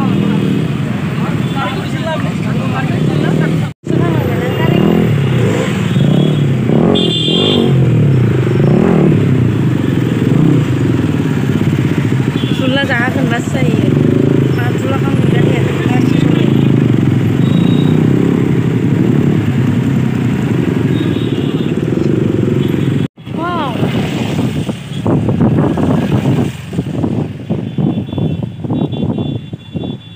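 Motorcycle engines running in slow, crowded traffic, with people's voices around them. The sound cuts out abruptly twice, about 4 and 23 seconds in.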